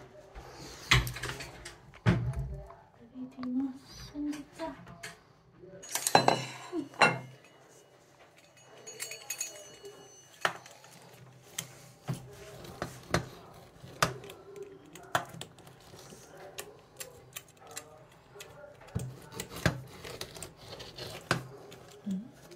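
A pizza-cutter wheel rolling through a baked pizza's crust in a metal baking tray, with many sharp clicks and knocks of the blade against the pan, a few louder ones in the first seconds and then regular ticks about a second apart.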